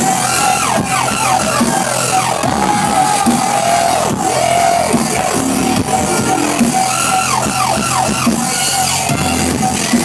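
Loud dubstep-style electronic dance music from a DJ set, played over a club sound system, with a steady bass line under it. Two runs of falling, swooping tones come in, one near the start and one about six seconds later.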